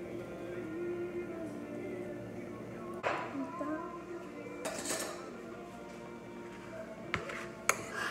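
Background music, with a few sharp clinks and knocks of dishes and kitchen utensils being handled on the counter, the sharpest near the end.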